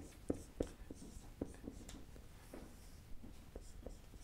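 Marker pen writing on a whiteboard: faint, irregular taps and short scratchy strokes as letters are drawn.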